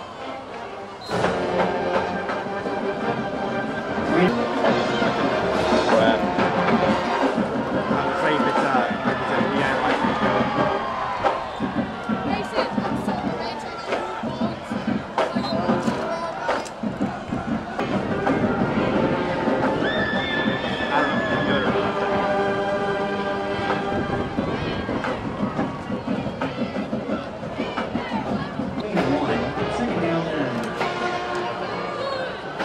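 Music over crowd noise and indistinct voices, getting louder about a second in.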